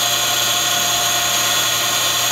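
A steady, loud machine hum with a whine made of many fixed tones, unchanging throughout.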